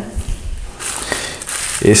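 Thin plastic sheet crinkling as ground meat is pressed onto it into a jar-lid mould, starting about a second in, after a few soft handling sounds.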